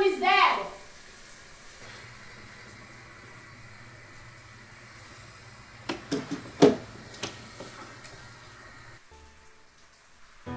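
Quiet room tone with a faint steady hum and hiss, broken about six seconds in by a short run of sharp knocks and clicks, the loudest just before the seven-second mark, as of objects being handled and moved about.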